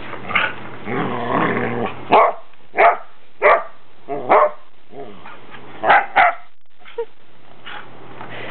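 Australian Shepherd growling for the first two seconds, then giving six short, sharp barks over the next four seconds, with a faint yip near the end.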